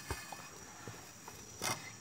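Faint metallic clicks of a 12 mm wrench working a gear-shift mount bolt under a Suzuki Carry Futura, with one louder knock near the end.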